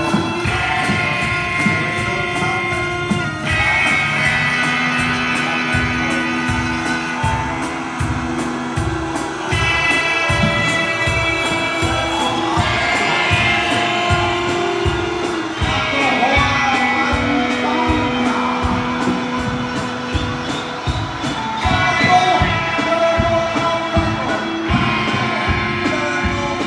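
Live band music: an electric hurdy-gurdy's held notes over a steady drum beat, bass and electric guitar, with voices singing.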